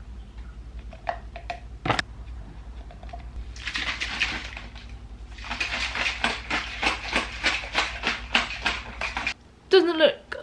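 Plastic shaker bottle of protein powder and water being shaken by hand. A short burst of shaking comes about halfway in, then a longer run of rhythmic sloshing strokes, about four a second, near the end. A few sharp clicks of the bottle are heard in the first two seconds.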